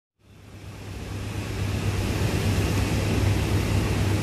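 Steady outdoor background noise with a low hum under an even hiss, fading in over the first second and a half.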